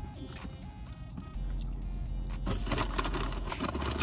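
Faint music over a steady low hum inside a car, with a broad rushing noise setting in about two and a half seconds in.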